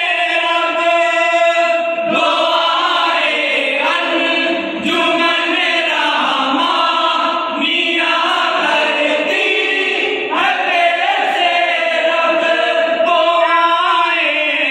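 A group of men singing devotional Islamic verse together, unaccompanied, in long held phrases with short breaks between lines.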